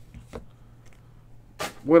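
A man's voice pausing mid-sentence, with a few faint clicks in the gap. It resumes speaking near the end.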